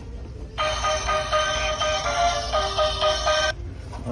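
A short electronic tune from a small, tinny speaker, typical of a Halloween decoration's try-me sound. It plays for about three seconds, starting about half a second in and cutting off suddenly.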